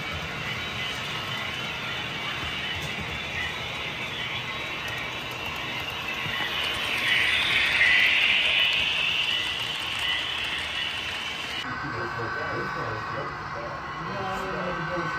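Model freight train cars rolling along the layout track, a steady rolling rush that grows louder as the cars pass close by about halfway through, then drops off abruptly near the end.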